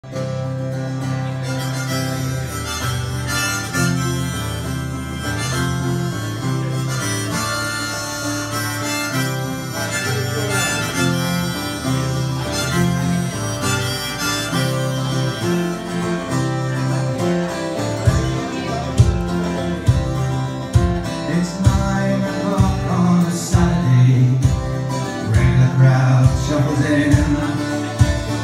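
Harmonica and strummed acoustic guitar playing a live instrumental song intro, with long held harmonica notes over the chords. A low, regular thumping beat joins in about two-thirds of the way through.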